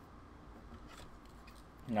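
Faint rustle and light ticks of a trading card being slid into a plastic card sleeve.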